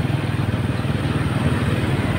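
Small motorcycle engine running steadily while riding, with a low rapid pulsing and a haze of road and wind noise.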